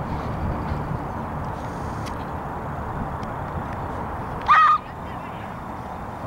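A single short, high honk about four and a half seconds in, rising briefly then held, over a steady outdoor background hiss.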